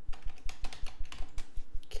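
Typing on a computer keyboard: a quick, irregular run of key clicks as a word is typed out.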